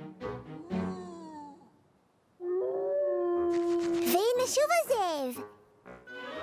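A cartoon character's voice howling like a wolf: after a short pause, one long held note that turns into a wavering call rising and falling in pitch. Voices and music come before it.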